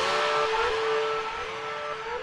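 Background music: a held electric guitar note with repeated small upward bends, slowly fading out.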